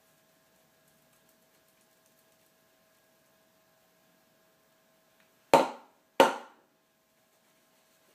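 Two sharp knocks about two-thirds of a second apart, each with a short ringing tail, over a faint steady hum.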